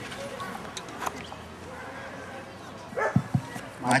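A dog barking: a few short, sharp barks about three seconds in, after a stretch of low background noise.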